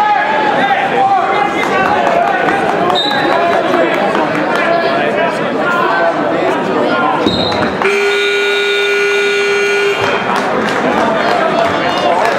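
A tournament scoreboard buzzer sounds once, one flat electronic tone about two seconds long, over steady crowd chatter in a gym.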